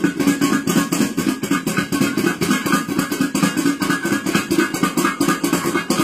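Garlic cloves rattling hard inside two bowls held rim to rim and shaken fast to knock the skins loose: a continuous rapid clatter, many hits a second.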